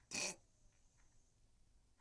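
A single short, breathy burst, like a person's scoffing exhale or snort, then near silence.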